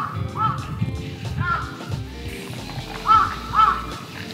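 A fizzy mixer poured from a can over ice in a tall glass for a highball. A crow caws four times over it, twice close together near the end, and these caws are the loudest sounds; background music runs beneath.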